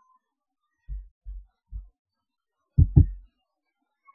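Low, dull thumps: three soft ones about a second in, then a louder double thump near three seconds.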